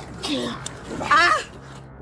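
A woman's wailing cries of distress while she is held down: a short falling cry, then a louder, higher, wavering one about a second later.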